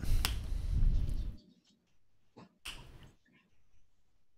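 Spinning online prize wheel's ticker: dense ticking for about the first second and a half, then thinning out to a few scattered clicks as the wheel coasts to a stop.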